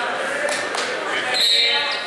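Spectators' voices echoing in a school gym during a wrestling bout, with a couple of dull thuds about half a second in and a brief high-pitched squeak or whistle-like tone about one and a half seconds in.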